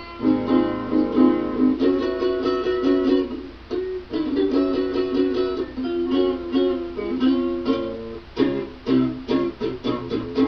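Acoustic plucked string instrument picked and strummed in a blues instrumental passage, with no singing.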